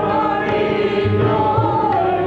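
Sikh kirtan: voices singing a sustained, gliding devotional melody over a low held drone, with tabla strokes.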